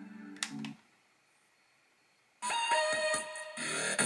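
Music from a portable Bluetooth camping speaker: a short low tone and a click in the first second, then about a second and a half of silence as the track changes. The next song starts about two and a half seconds in.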